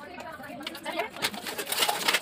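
Plastic front grille of a Maruti Suzuki Alto being pried loose from its bumper by hand: plastic creaking with several sharp clicks in the second half as its clips let go.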